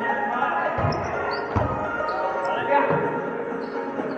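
A volleyball being struck during a rally: three dull thuds, a second or so apart, echoing in a large gym hall, over background music and voices.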